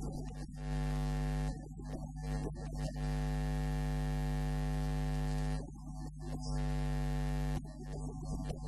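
Loud, steady electrical mains hum and buzz on the recording. It cuts away twice, about a second and a half in and again past the middle, to quieter, uneven stretches of sound.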